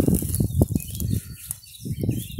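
Rustling and crackling of dry grass and bramble stems, with a low rumble of wind on the microphone. The crackles are densest in the first second and a half.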